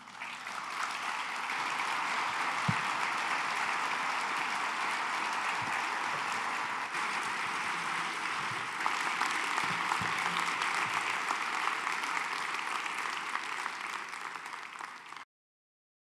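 Audience applauding. It builds up over the first couple of seconds, runs steadily, and is cut off abruptly near the end.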